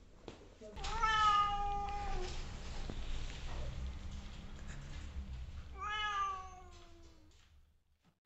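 Domestic cat meowing twice: a long call about a second in, and a second call near the end that falls in pitch.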